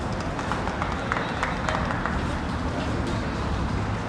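Open-air football stadium ambience: a steady wash of noise with scattered distant shouts and voices, a few of them short and sharp in the first two seconds.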